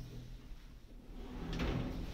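Schindler 5500 traction lift heard from inside its cab: a low hum, then a rising swell of sliding, rolling mechanism noise that peaks about one and a half seconds in.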